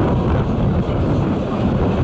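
Wind buffeting the microphone in a loud, steady low rumble, over the running noise of a narrow-gauge steam train's open car rolling slowly along.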